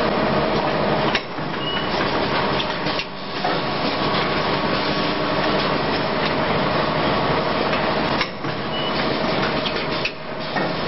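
Automatic blister packing machine running: a dense, steady mechanical clatter with a steady hum in it, dipping briefly in loudness three times.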